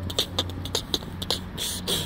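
A man beatboxing: a run of sharp mouth clicks and short hissing bursts at an uneven beat.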